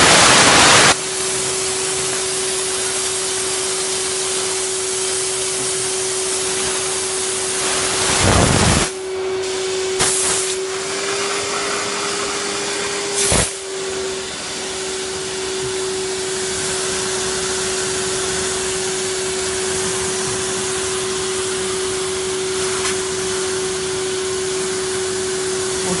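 Vacuum cleaner running steadily through a steam vacuum nozzle, a constant rushing hiss with one steady hum. Louder rushes of noise end about a second in and come again around a third of the way through, with a couple of short sharper spikes soon after.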